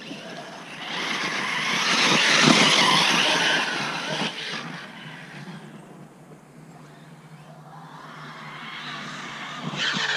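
Arrma Talion 6S RC truggy's brushless electric motor whining and its tyres running on soft dirt. It grows louder to a peak about two to three seconds in, fades away, and grows louder again near the end.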